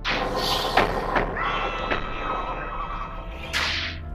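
Dramatic film sound effects: a sudden whooshing burst with two sharp cracks about a second in, sustained ringing tones through the middle, and a final swish near the end.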